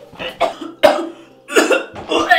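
A man coughing hard, about four harsh coughs in quick succession, as he coughs up blood.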